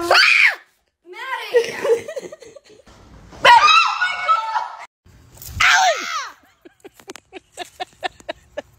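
Women screaming in fright: several short, high shrieks that rise and fall in pitch, with breathless laughing and exclamations between them.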